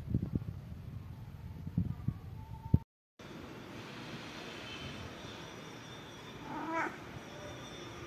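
A domestic cat gives one short meow about two-thirds of the way through, over a faint steady background. Before it, a few low thumps of handling and movement, then the sound drops out briefly.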